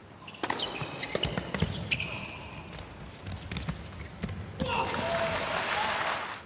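A tennis rally on an indoor hard court: a run of sharp ball strikes and bounces with short high shoe squeaks. Near the end, crowd applause breaks out.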